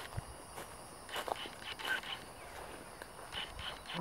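Footsteps of someone walking on a dirt path covered in fallen leaves: a few faint, irregular steps.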